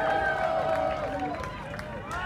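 Voices shouting and calling out. A long held call fades away in the first second, then scattered shorter calls follow.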